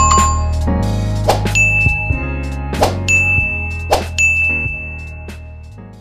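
Outro music with the sound effects of an animated subscribe button: a short click followed by a bright bell-like ding, three times over, over a steady low music bed that fades out near the end.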